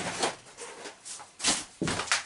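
A few short knocks and rustles of things being handled, the sharpest about one and a half seconds in.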